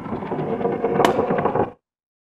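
Sound effects for an animated TV-channel logo: a rolling, scraping sound with a sharp click about a second in, cutting off suddenly near the end.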